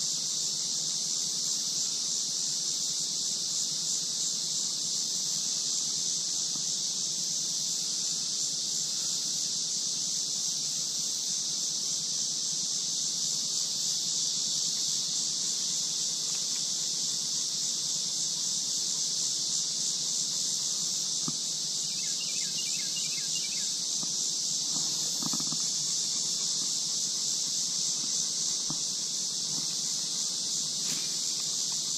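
Steady, high-pitched buzzing drone of a summer cicada chorus, unbroken throughout, with a few faint ticks in the last third.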